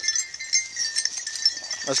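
Small metal collar bells jingling steadily with a thin ringing tone as a beagle works through the brush.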